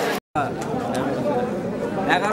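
Chatter of several people talking at once, broken by a brief dropout to silence about a quarter second in.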